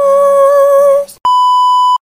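A singing voice holds the last note of a song for about a second and then breaks off. Right after, a steady high-pitched test-tone beep of the kind played over TV colour bars sounds for most of a second and stops just before the end.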